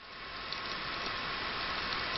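Bicycle chain being turned backwards through a Shimano Deore rear derailleur's jockey wheels and the rear hub, a steady whirring hiss. The chain is being run to find a stiff link.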